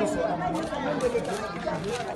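Several people talking at once: overlapping chatter of a small group.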